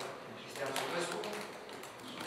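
Faint speech, quieter than the main speaker, with a few light taps or clicks near the middle.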